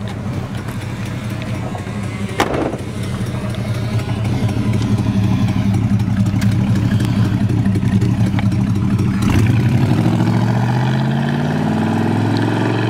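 1968 Buick GS 400's 400 cubic-inch V8 running at a steady low speed, then rising in pitch as it accelerates away near the end. A single sharp click comes a couple of seconds in.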